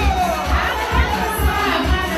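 A crowd shouting and cheering over music with a steady low drum beat, thumping two to three times a second, with high voices sliding in pitch above it.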